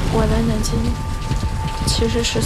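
Film soundtrack: a dense, steady rushing noise like heavy rain over a deep rumble, with a faint held tone and short snatches of a voice speaking a line of dialogue.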